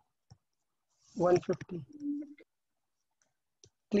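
A few light clicks of a stylus tapping a tablet screen while writing, with a brief murmured word and hum about a second in.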